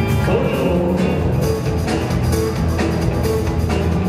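Live rock and roll band playing with a steady drum beat, bass and guitar.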